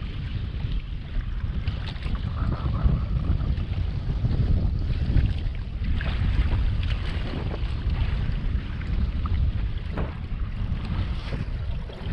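Wind rumbling on the microphone aboard a bass boat on choppy open water, with waves washing against the hull and a few faint knocks.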